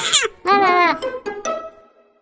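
A cartoon kitten's voice crying out in a sobbing wail that wobbles up and down in pitch, followed about a second in by a few short plucked notes that fade away.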